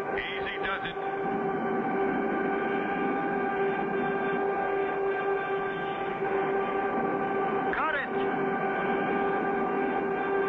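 Steady drone of an aircraft engine sound effect, holding a constant hum with several steady tones. About eight seconds in, a short swoop of pitch rises and falls.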